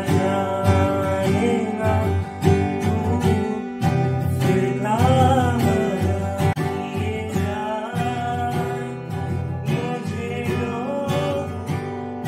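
Cutaway acoustic guitar strummed while a young man sings along.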